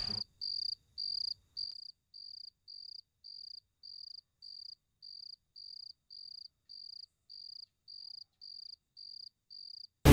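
A cricket chirping in a steady rhythm, about two evenly spaced high chirps a second, as a night-time ambience. The chirps are louder for the first couple of seconds, then settle to a fainter, even level.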